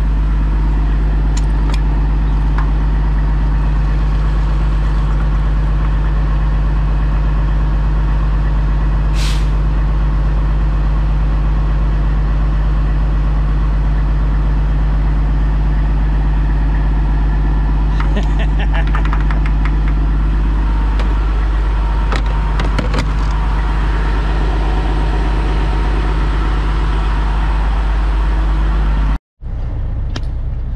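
Semi truck's diesel engine idling steadily at the pump while diesel runs from the fuel nozzle into its tank. A brief hiss comes about nine seconds in and a few clicks later, and the sound cuts off suddenly near the end.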